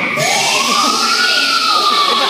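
Siren-like sound effect in a hip hop dance mix played over a gym sound system: one long tone that rises for about a second, then slowly falls.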